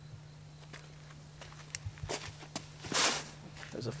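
A disc golfer's steps on a leaf-littered dirt tee as he throws a forehand drive. A few light footfalls come about two seconds in, then a short rustling whoosh, the loudest sound, about three seconds in.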